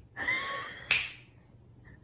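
A sharp finger snap about a second in, followed by quiet room tone.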